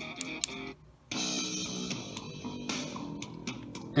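Guitar music playing from the Onforu portable Bluetooth speaker. About a second in, the music cuts out briefly and a different track starts: the speaker skipping to the next song after a short press of its button.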